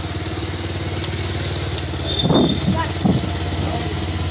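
Motorcycle engine running steadily while riding, a constant low hum heard from the seat. Short bursts of voices come a little past halfway and are the loudest moments.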